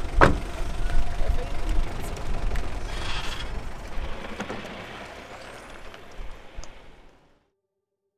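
A pickup truck's low rumble, with a sharp knock just after the start and a brief hiss about three seconds in. The rumble fades away steadily and stops a little after seven seconds.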